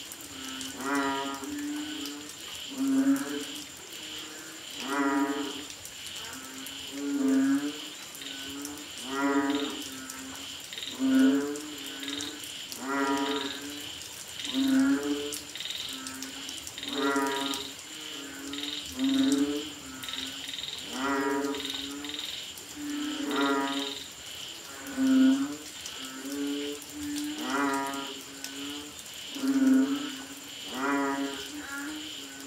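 Banded bullfrogs (Asian painted frogs) calling in a chorus: deep, lowing calls, about one every two seconds, from several frogs overlapping. A steady high whine and faster high-pitched pulsing run underneath.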